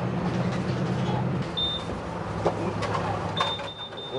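Interior of a moving city bus: the engine's steady low drone, which drops lower about one and a half seconds in. Over it come two short, high electronic beeps, the second one longer and near the end, along with a few small clicks and knocks.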